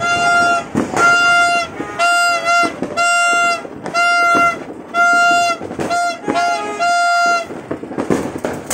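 A horn sounding one steady high note in repeated blasts, about once a second, over the crackling hiss of a firework fountain.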